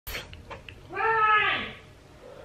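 A woman's voice making one drawn-out, wordless vocal sound about a second in, its pitch rising and then falling away. It follows a few faint short clicks.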